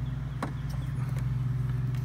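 An engine idling steadily, a constant low hum with an even pulse, with one light click about half a second in.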